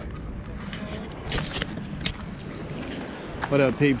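Steady outdoor background noise with a few short scuffs as the handheld camera moves over a gravel path. A man says one word near the end.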